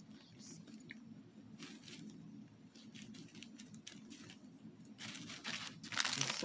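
Small plastic zip bags of diamond-painting drills being handled, crinkling faintly now and then and more busily near the end.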